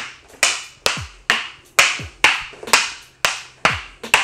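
Kali sticks clacking against each other in a steady sombrada drill, about two sharp strikes a second, over background music with a beat.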